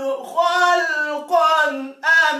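Unaccompanied Quran recitation by a male qari: one high voice holding long, ornamented notes that bend in pitch, with a brief breath pause just after the start and another at the end.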